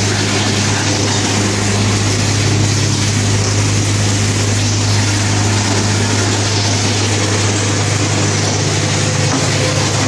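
Vibrating table of a concrete tile-making machine running, shaking filled tile moulds to settle the wet concrete: a loud, steady low hum with an even rattle over it.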